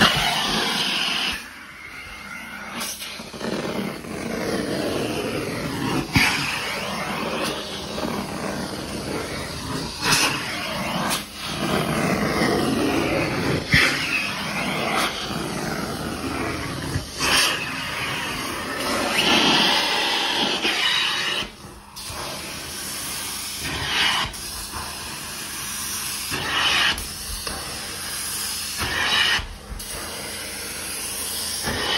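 Carpet-extraction stair tool and vacuum hose spraying and sucking water from carpeted stairs: a steady rushing hiss of suction that shifts in pitch as the tool moves, dropping away briefly a few times when it lifts off the carpet.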